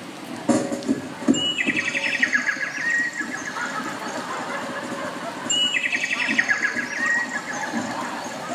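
A high chirping call, a short note followed by a quick falling trill, heard twice about four seconds apart, with a couple of knocks about a second in.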